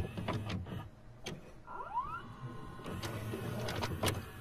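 VCR tape mechanism sound effect: a series of clicks, then a short motor whine rising in pitch about two seconds in, settling into a faint steady hum with more clicks near the end.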